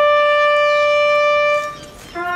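Solo trumpet playing a slow, solemn call: one long held note that fades away near the end.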